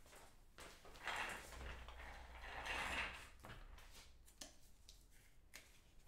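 Faint rustling and sliding of plastic as a trading card is handled and slipped into a clear plastic card holder, followed by a few light clicks.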